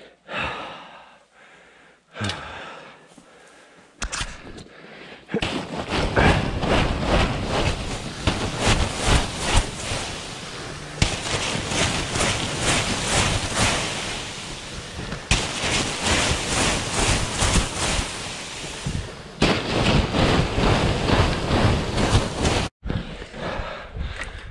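A broom pushing up against a high tunnel's plastic film roof to shed a heavy snow load: a couple of knocks, then a long loud rushing rumble of the sheeting and the sliding snow, broken by several abrupt changes.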